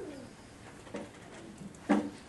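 A few short, soft vocal sounds in a hushed room: a falling coo at the start, a fainter one about a second in, and a louder brief one just before the end.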